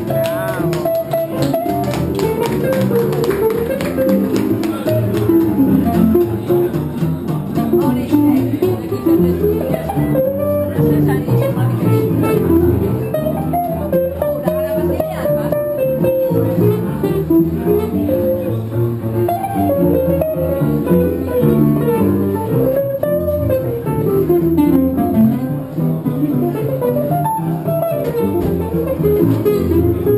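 A traditional jazz band playing live without a break, a guitar strumming the rhythm over an upright double bass, with saxophone, clarinet and trombone.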